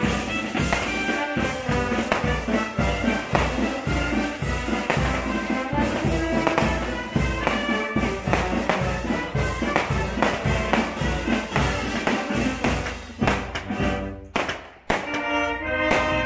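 Brass band music with a steady, evenly spaced drum beat. It drops away briefly near the end and then comes back.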